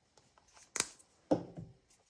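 Plastic acrylic paint bottles handled on a craft mat: a sharp click of a bottle cap, then a louder, duller knock about half a second later that fades quickly.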